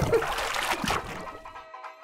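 An edited-in transition sound effect: a splashy rush that fades over about a second, with a short musical sting of a few held notes under it.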